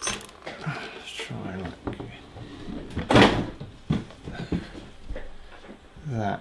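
Handling noise from a model helicopter's carbon-fibre frame as it is picked up and turned around: scattered knocks and clicks, with one loud scraping rustle about three seconds in.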